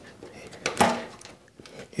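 A 10-wire plastic wiring connector for a motorcycle cruise control module being handled and unplugged: a few sharp plastic clicks and light rattles, the loudest a little under a second in.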